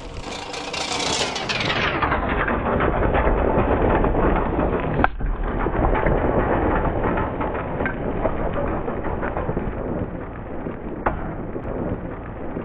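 Tricycle tyres rolling and then skidding sideways over loose gravel: a steady crunching noise dotted with small stone clicks, growing louder over the first few seconds as the trike approaches and drifts, with one sharp crack about five seconds in.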